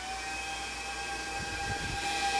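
Small server cooling fans in a Brocade SilkWorm 200E 16-port fibre switch running at high speed: a steady whine over a rush of air.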